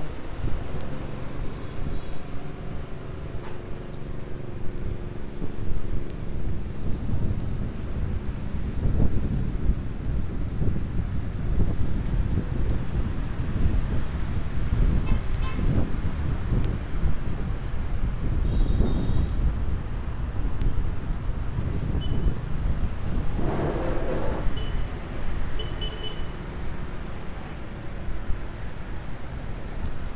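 Street traffic: a steady rumble of passing motorbike and car engines, with several short horn toots in the second half.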